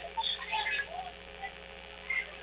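A lull on a telephone line: a few faint, brief fragments of a caller's voice in the first second, over a low steady hum.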